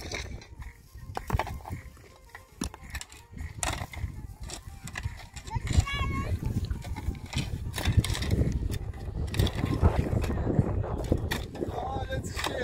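Steel shovel blades scraping and knocking through stony soil in a run of short, irregular strikes as two people dig, over a low rumble of wind on the microphone.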